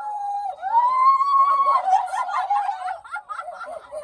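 High-pitched whooping and shrieking from several voices, with laughter: one long call that rises and holds about a second in, then overlapping shouts and giggles.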